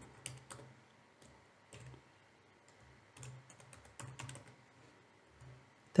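Computer keyboard typing: faint key clicks coming in small, irregular clusters.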